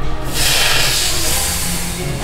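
Background music with a steady bass line, over which a loud hiss comes in about a third of a second in and slowly dies away.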